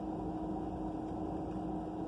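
Steady low hum of a parked car running, heard from inside the cabin, with a faint constant tone over it.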